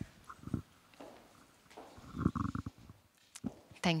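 A lull between speakers: faint, muffled low sounds come and go, the loudest about two seconds in, with a sharp click a little after three seconds. A voice starts speaking at the very end.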